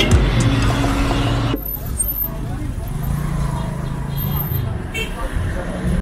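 Background music that stops abruptly about a second and a half in, followed by outdoor city ambience: a low engine hum with faint distant voices.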